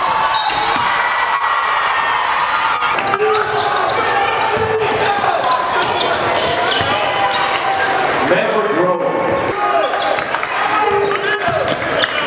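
Live sound of a basketball game in a gym: the ball bouncing on the court, sneakers squeaking, and crowd voices and shouts echoing around the hall.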